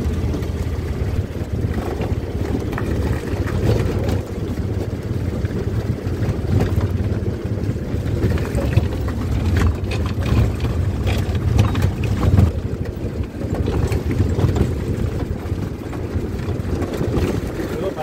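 Steady low rumble of wind buffeting a phone's microphone while travelling along a road, with vehicle and road noise.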